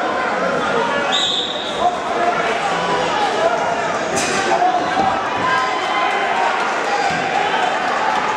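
A referee's whistle blows once, short and shrill, about a second in, the signal to start wrestling from the referee's position. It sounds over steady crowd chatter in a large gym. A sharp slap comes about four seconds in.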